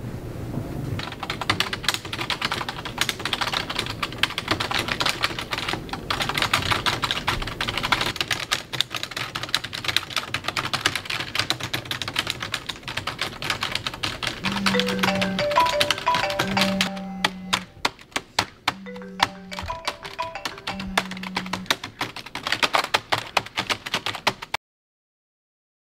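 Fast, continuous typing on an HP computer keyboard: a dense run of rapid key clicks. About halfway through, music with long held bass notes comes in under the typing.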